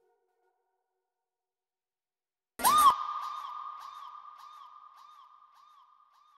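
Near silence, then about two and a half seconds in a sudden electronic sound effect: a short upward sweep into a held high tone, with echoing repeats that fade away.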